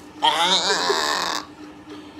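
A person's drawn-out non-word vocal sound, lasting about a second with a wavering pitch, then stopping.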